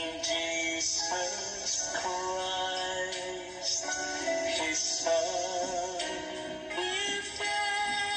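A man singing a ballad over a karaoke backing track, holding long notes with vibrato.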